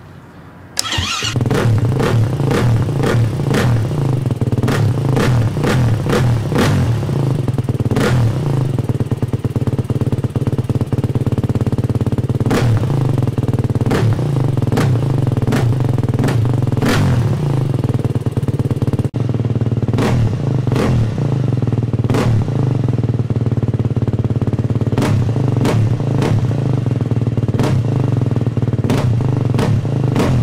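350 four-stroke enduro motorcycle engine with an FMF Q4 silencer catching about a second in, then running loud and steady while the throttle is blipped again and again, the pitch rising and falling with each blip.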